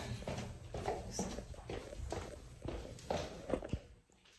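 Footsteps going down a flight of indoor stairs, about two steps a second.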